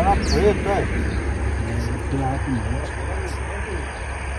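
Indistinct voices talking over a steady low rumble, with a faint high bird chirp near the start.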